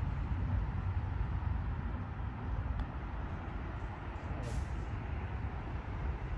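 Steady low outdoor background rumble, with a brief faint high hiss about four and a half seconds in.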